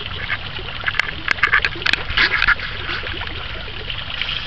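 Water trickling steadily as a thin fountain jet falls into a garden pond, with a run of short animal calls from about one to two and a half seconds in.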